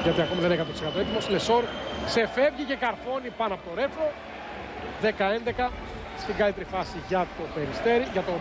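Broadcast sound of a basketball game: sneakers squeaking in short chirps on the hardwood court and the ball bouncing, under a commentator's voice.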